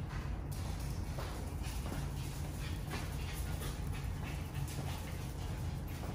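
Two small dogs and a person walking across a bare concrete garage floor: faint irregular clicks and steps over a steady low hum.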